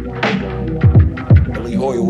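Hip hop beat: deep booming bass kicks that drop in pitch, three of them, under a looping pitched instrumental sample.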